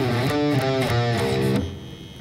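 Electric guitar, tuned down with the low string dropped to C, playing a short low single-note riff on its bottom strings. The notes change pitch quickly one after another and stop about one and a half seconds in.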